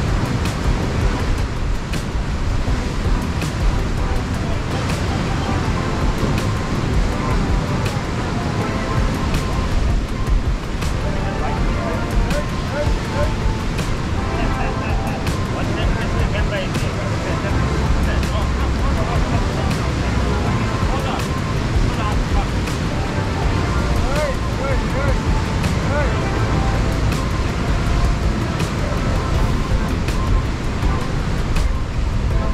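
Strong wind buffeting the microphone in a continuous low rumble over the steady wash of waves breaking on rocks, with faint voices now and then.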